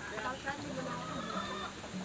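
A domestic chicken clucking among people's chatter.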